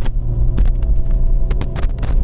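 Renault Megane 2's 1.4-litre four-cylinder petrol engine, converted to LPG, droning steadily inside the cabin at full throttle in second gear, revs climbing slowly from about 3500 toward 4000 rpm as the car labours up a steep hill. A few sharp clicks are heard near the end.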